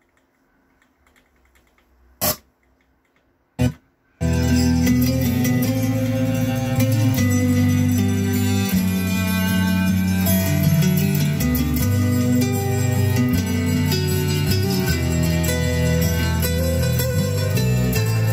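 FM radio through an Onkyo T-4430 tuner, switched between preset stations: muted at first, with two brief bursts of sound about two and three and a half seconds in, then from about four seconds a station's music playing steadily.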